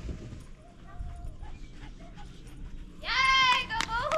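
A dog gives one loud, drawn-out, high-pitched bark about three seconds in.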